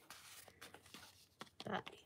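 Faint rustle of a sheet of paper being handled, with a few small clicks from a little jar of clear glitter.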